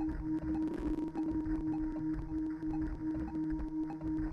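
A sample looping in the Waves CR8 software sampler while its loop point is being adjusted: a steady held tone over a repeating low pulse.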